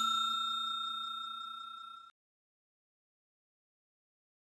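Tail of a bell-like 'ding' sound effect for a subscribe-and-notification-bell animation, ringing and fading away, then cutting off suddenly about two seconds in.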